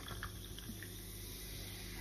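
Faint fizzing and trickling of a carbonated gin and tonic being poured from a can into a glass.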